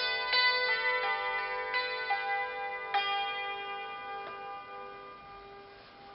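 Hammered dulcimer strings struck with small wooden hammers: a slow run of ringing notes over the first three seconds, then the last notes ring on and die away gradually.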